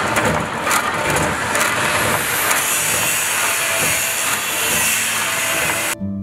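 Motor-driven power hacksaw running and cutting metal stock: a steady, noisy hiss of machine and blade, with a faint high whistle joining about two seconds in.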